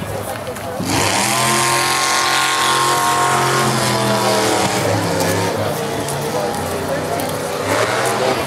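A motor vehicle engine running, its pitch rising about a second in and then holding steady for several seconds before fading out near the end, with a hiss over it.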